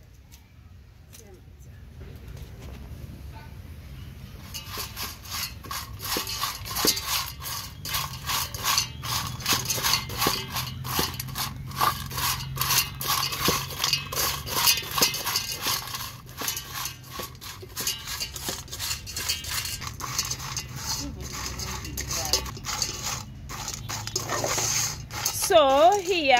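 Dried omena (small silver fish) being dry-roasted in a metal saucepan over a charcoal stove while a wooden stick stirs them. A quick, continuous run of dry scraping and rustling starts about four seconds in.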